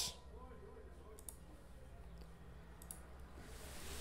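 A couple of faint computer mouse clicks, spaced about a second and a half apart, over a low steady room hum.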